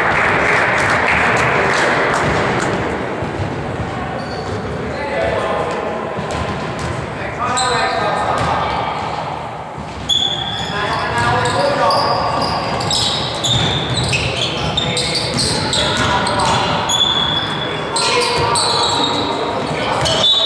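Indoor basketball game: a basketball bouncing on a hardwood court, with sneakers squeaking and players' voices echoing around a large sports hall.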